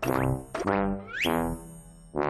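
Cartoon-style comic sound effects edited into a variety-show clip: three springy tones that slide down in pitch one after another, with a quick upward whistle-like glide just after a second in.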